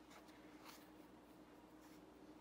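Near silence: faint soft rustles of a yarn tail being drawn with a needle through crocheted fabric, the clearest a little under a second in, over a faint steady hum.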